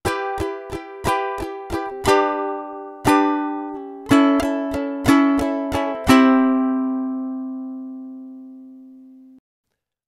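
Ukulele strummed with all down strums in 6/8 time, the first of each group of three accented: six quick strums on Em, two longer strums on G, and six quick strums on A. A final C chord is then left ringing for about three seconds before it is cut off.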